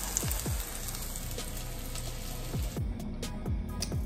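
Background music with a steady beat over banana-oat pancakes sizzling in oil in a frying pan. The sizzling stops about three seconds in, leaving the music alone.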